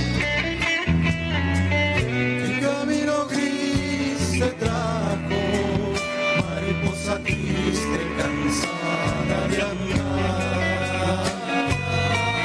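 Live Argentine folk band playing a zamba, with strummed acoustic guitars over a deep bass line and a drum kit.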